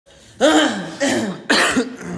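A woman coughing three times in quick succession, each cough voiced and dropping in pitch.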